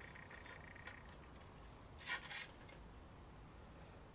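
Mostly quiet room tone, with a brief faint rubbing scrape about two seconds in: a steel digital caliper's jaws being slid and closed against a carbon fibre composite insert.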